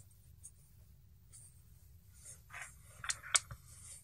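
Small plastic parts of a tiny-whoop drone handled on a cutting mat. It is near quiet at first, then soft rustling begins about two seconds in, with two sharp clicks a quarter of a second apart near the end as the clear plastic ducted frame is picked up and moved.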